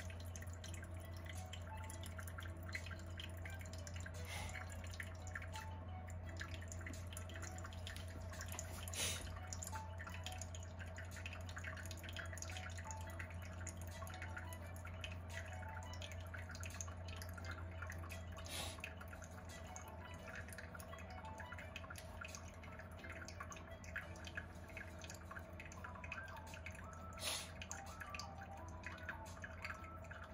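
Brewed green tea dripping from a paper-filtered cone tea dripper into a glass server: a faint, steady run of small drips and clicks over a low hum, with a few louder clicks about nine seconds apart.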